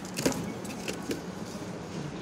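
Wire shopping cart rolling over a hard store floor, its metal basket rattling with a few short clicks over a steady low hum.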